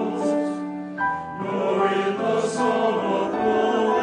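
Mixed choir singing sustained chords in several parts, with a brief dip in volume about a second in before the voices swell again.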